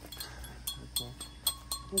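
Cut-glass dishes clinking several times, with a clear ring held from about a second in: the glass is being tapped to hear whether it rings like crystal.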